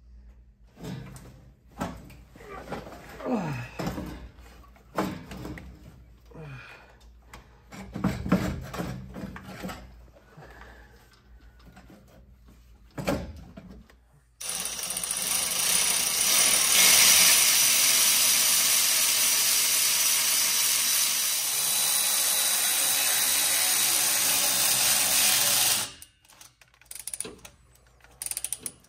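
Tools clinking and knocking on engine parts. Then, about halfway through, a power tool starts and runs loud and steady for about eleven seconds before cutting off suddenly.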